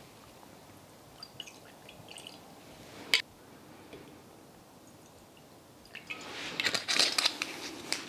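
Irish whiskey poured quietly from screw-top bottles into glass tasting glasses, with one sharp click about three seconds in. In the last two seconds there is louder rustling and scraping as a bottle is handled and its screw cap twisted back on.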